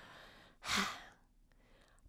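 A girl sighing once: a short breathy exhale a little over half a second in, after a faint breath.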